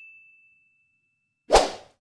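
Sound effects of an animated like-and-subscribe end screen. First, the ringing tone of a bell-like ding fades out. Then a short whoosh comes about one and a half seconds in.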